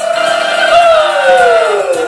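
One voice holds a long high note over the band. The note rises slightly, then slides down in pitch across about two seconds.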